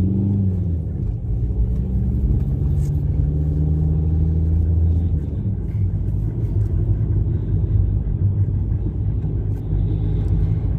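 Car engine and road rumble heard from inside the cabin while driving. A steady low engine note holds for the first five seconds or so, then gives way to a rougher tyre-and-road rumble.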